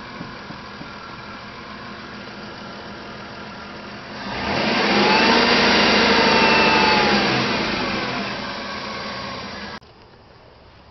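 1997 Plymouth Grand Voyager's engine idling steadily, then revved about four seconds in. The pitch rises, holds for a couple of seconds, then sinks back slowly toward idle before cutting off abruptly near the end.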